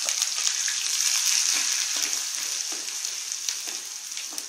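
Chopped onions sizzling and crackling in hot oil in a pot, stirred with a spatula; the sizzle eases a little toward the end.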